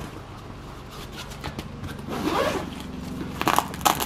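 Zipper on a Peak Design Everyday Messenger bag's front pocket being pulled open, with fabric rubbing as a hand works the bag. A rasping pull comes about two seconds in, and a quick run of clicking zipper teeth comes near the end.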